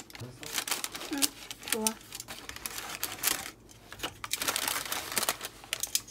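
Paper food liner crinkling and rustling, with irregular light clicks of tongs and a disposable takeout box being handled as a bread roll is packed into it.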